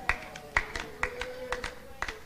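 Hand claps, about four a second and a little uneven, over a long held tone.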